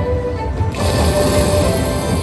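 Aristocrat video slot machine playing its free-spins bonus music over a steady low beat. About three-quarters of a second in, a sustained rushing, crackling sound effect joins in as the machine adds more wild symbols to the reels.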